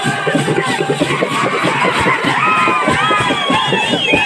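Frame drums and a barrel drum beaten in a fast, dense rhythm while a crowd shouts and cheers, high whooping voices rising over the drumming in the second half.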